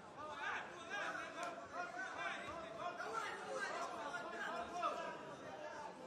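Several voices calling out and chattering over one another throughout, with no single clear speaker, typical of spectators and cornermen shouting during a ground exchange.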